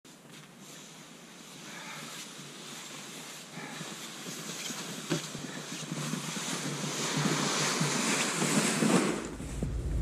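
Footsteps crunching in snow and a sled dragging over the snow, getting steadily louder as the walker comes closer.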